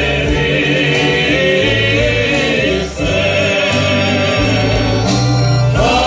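Several men singing a Croatian folk song together over a live band. A new sung line starts after a brief dip about three seconds in.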